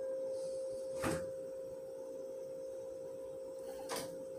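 A steady, even hum at one pitch, with two brief, sharp noisy bursts, one about a second in and one just before the end.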